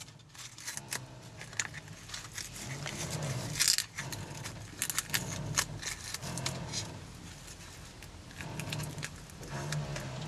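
Plastic cling wrap crinkling and crackling as it is peeled off a dried papier-mâché form, in irregular bursts with a louder spell a little before the middle.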